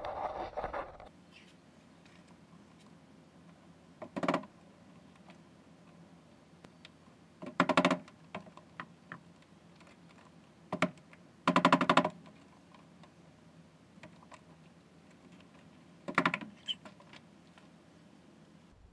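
About five short runs of rapid, light taps, several seconds apart: a hammer tapping out the small retaining pin of a VW Beetle's interior door handle.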